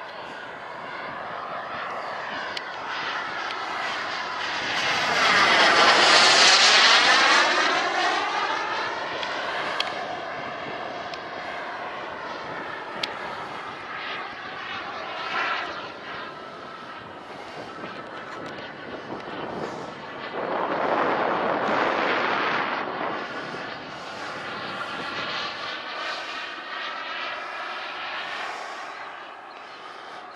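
Turbine engine of a radio-controlled F-16 model jet flying past overhead, a steady jet whine that swells loud about six seconds in and again a little past twenty seconds, fading between passes.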